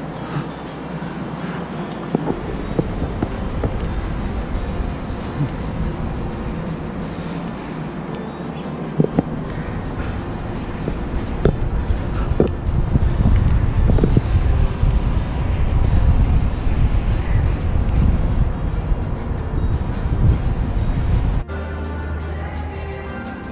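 Wind buffeting a helmet-mounted action camera's microphone as a rumble that grows louder over the second half, with a few scattered knocks, under background music.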